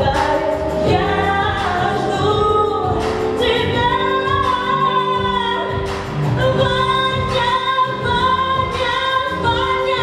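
A young female singer singing a pop song over a backing track, with held and gliding sung notes above a steady bass and beat.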